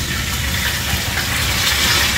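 Steady hiss of food frying in a pan on an electric stove, with a low rumble underneath.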